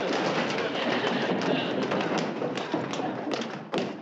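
A crowd rushing out at once: many hurried footsteps and thumps on a wooden floor, mixed with a babble of excited voices.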